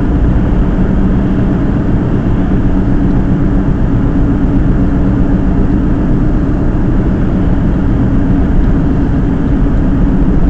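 A car's engine and tyre noise heard from inside the cabin while driving, a steady low drone.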